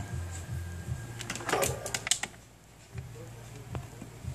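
Hands handling an opened smartphone: a cluster of clicks and rustling lasting about a second, near the middle, over a low steady hum.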